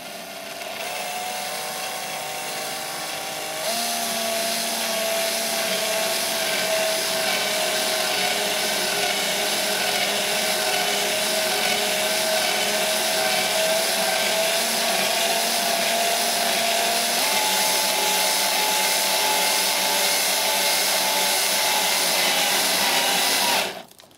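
Cordless drill driver turning a spiral combination drill-tap-countersink bit through acrylic sheet, cutting an M3 thread: a steady motor whine that starts gently, gets louder and a little higher about four seconds in, steps up in pitch again around two-thirds of the way through, and stops abruptly just before the end.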